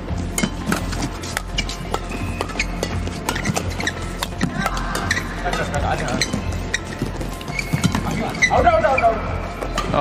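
Badminton racquets striking a shuttlecock back and forth in a fast doubles rally, giving sharp hits several times a second, with court shoes squeaking on the court and a louder burst of squeaks and crowd reaction near the end as the point finishes.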